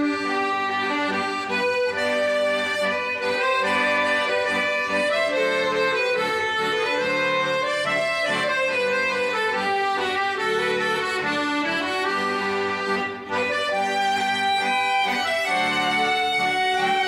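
Two accordions and two violins playing an instrumental Swedish folk tune together, accordion chords under the violin melody. The music briefly dips about thirteen seconds in, at a phrase break.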